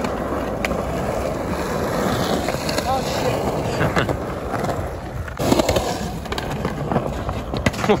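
Skateboard wheels rolling on a concrete skatepark bowl, with a few sharp knocks of the board; the loudest knock comes about five and a half seconds in.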